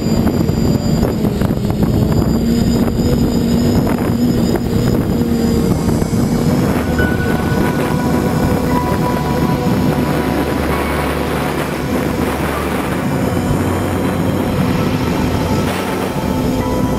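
FPV quadcopter's electric motors and propellers whirring steadily, heard through the onboard camera's microphone, with strong wind buffeting the mic. A higher whine joins about seven seconds in.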